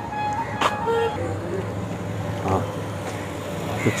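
Steady outdoor street noise with road traffic, and a brief faint voice about two and a half seconds in.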